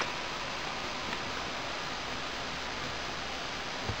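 Steady, even background hiss of room tone, with no sound from the unplugged workstation.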